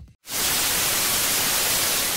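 Television static sound effect: a steady, even hiss of white noise that starts suddenly about a quarter second in, after a short silence.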